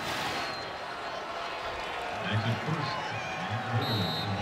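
A TV sports broadcast's replay-transition whoosh, rising and then breaking into a wash of noise at the start, followed by steady stadium crowd noise with faint indistinct voices in the second half.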